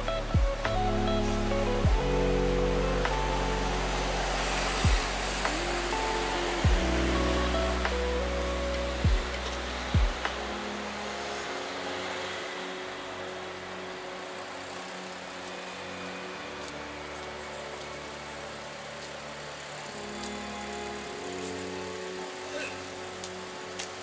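Background music: sustained synth chords over a deep bass with a few heavy low drum hits in the first half; the bass and drums drop out about halfway, leaving softer held chords.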